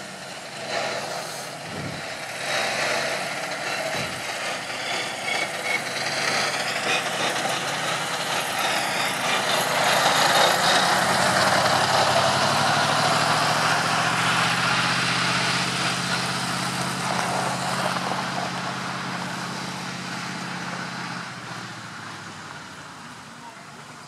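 A Geräteträger (tool-carrier tractor) towing a two-axle trailer drives past with its engine running steadily. It grows loudest about halfway through, then fades away toward the end.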